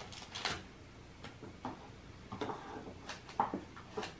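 Forks clicking and scraping against small cups of melted chocolate as coconut candies are dipped: a handful of light, scattered clicks and scrapes.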